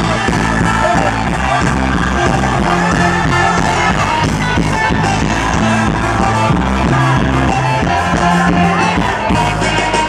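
A live rock band playing loudly through a concert PA, with electric guitars, keyboards and singing, heard from within the audience.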